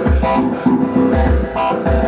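Korg Electribe EMX groovebox playing a looped pattern: synth bass notes and sustained synth tones over a drum beat, with a low kick-like thump about every half second. The synth parts are programmed to imitate analog drums and synth voices.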